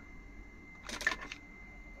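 A short cluster of faint clicks and rustle about a second in, the handling of a screwdriver being brought to the brass pressure relief valve, over a faint steady high-pitched tone.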